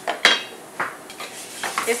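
Wooden spoon stirring rice toasting golden in oil in a stainless steel pot, with three sharp scrapes against the pan, the loudest just after the start.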